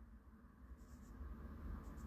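Near silence between speech: faint room tone with a low rumble and small crackles, a little louder from about a second in.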